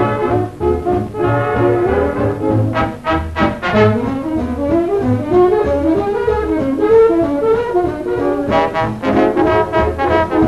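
Swing big band playing an instrumental passage, trombones and trumpets to the fore over a steady bass beat about twice a second.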